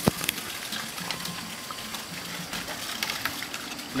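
Footsteps and a few sharp knocks on a wooden stilt-house floor, over a steady rush of flowing water from a nearby stream and waterfall.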